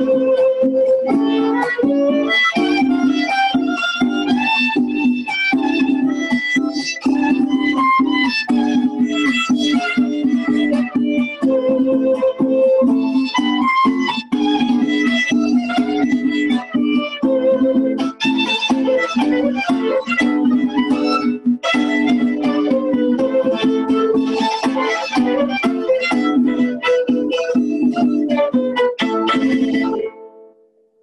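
Violin and small strummed guitar playing a tune together, the violin carrying the melody over steady rhythmic strumming. The piece ends right at the close, with a last note ringing briefly.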